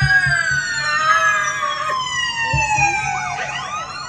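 A siren-like wail: one long high tone that glides slowly down in pitch, then sweeps up again near the end, like the rise and fall of a siren.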